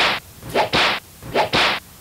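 Four quick whoosh sound effects, sharp-edged swishes a fraction of a second each, the last two close together, marking animated words popping onto the screen.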